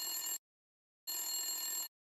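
Mobile phone ringtone: two short electronic rings of steady high tones, the first cut off within half a second and the second lasting under a second, with a pause between.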